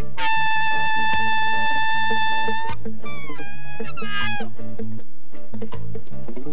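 Saxophone solo over a live rocksteady band: one long held note for about two and a half seconds, then short phrases with bending pitch. Bass and drums keep a steady rhythm behind it.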